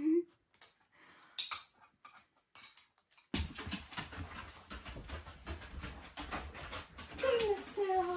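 Steel throwing knives clinking sharply together in the hands, twice in the first couple of seconds. After that, a dog moving about on the floor, with a falling, whimpering whine near the end.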